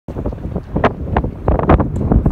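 Wind buffeting the microphone: a loud, uneven low rumble that surges in gusts.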